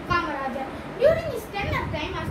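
A boy's voice speaking: only speech, with no other sound standing out.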